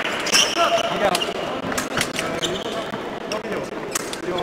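Indistinct background voices in a sports hall, with scattered sharp clicks and short squeaks from fencers moving on the piste between touches.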